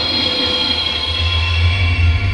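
Dark intro sound design: a steady low rumble with several thin, high sustained tones over it, the rumble swelling about a second in.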